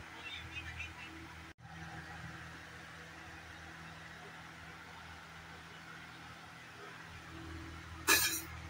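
Faint, steady background hum and hiss, broken by a brief dropout about a second and a half in.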